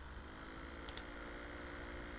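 Quiet background hiss and low hum, with a faint single click about a second in.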